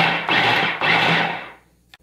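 Food processor run on its pulse button, its blade shredding cooked beef: the motor whirs in a few short surges, then stops and winds down about a second and a half in.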